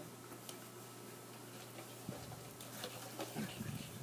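Faint, scattered ticking and rustling, a little busier in the last second or two.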